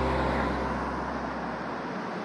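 Street traffic noise, a steady rush of road sound, while background music fades out underneath.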